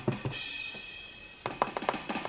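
Sampled drum kit played from a tablet drum-pad app: a hit at the start with a cymbal ringing over it, then a quick run of about five drum strikes near the end.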